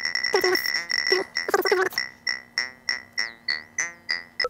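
Mutable Instruments Plaits module on its granular formant oscillator model playing an obnoxious, frog-like 'melodic frog' patch: a sequence of short pitched notes with a croaky vowel colour. About halfway through, as a knob is turned, the notes thin out into about three a second, each fading quickly, over a steady high tone.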